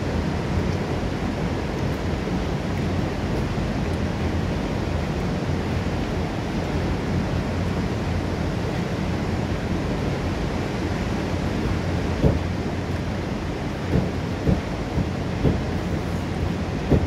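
A tall waterfall plunging onto rocks and into a fast river: a steady, deep rush of falling water. A few short thumps come in the last few seconds.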